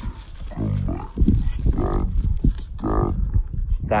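Two drawn-out, pitched calls about a second apart, over a constant low rumble of wind on the microphone.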